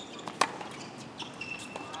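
A tennis racket strikes the ball once, a sharp pop about half a second in, followed by faint court noise.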